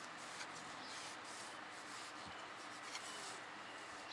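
Cloth rag rubbing over the metal of a removed diesel piston, a soft repeated wiping, with a couple of light knocks as the piston is handled.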